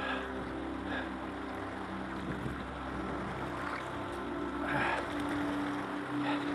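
Kayak paddle strokes splashing, at the start, about a second in and twice near five seconds, over the steady rush of water running through river shoals.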